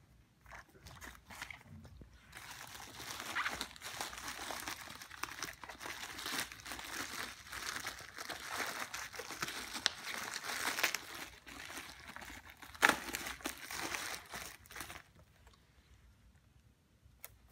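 Plastic bubble-wrap packaging crinkling and crackling as it is handled and pulled away from a boxed album. It starts a couple of seconds in and stops about a second before the end, with one sharp, loudest crackle about thirteen seconds in.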